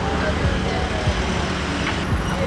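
Street traffic noise: a steady low rumble of vehicle engines with no single event standing out.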